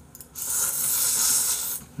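A person slurping up a forkful of spaghetti noodles in one long, hissing slurp of about a second and a half.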